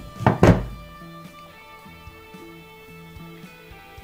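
Wire cutters snipping through a guitar patch cable: a sharp snap and a thunk close together near the start, over steady background music.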